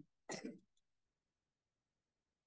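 A single short throat-clear, about a third of a second in, then near silence.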